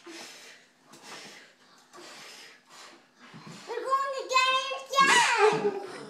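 Children blowing hard at birthday candles: four short puffs of breath about a second apart, then children's voices from about halfway through.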